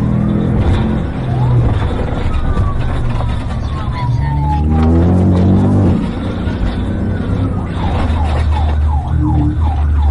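Police siren wailing in slow falling and rising sweeps, changing to a fast yelp near the end. Under it a car engine revs up under hard acceleration about halfway through.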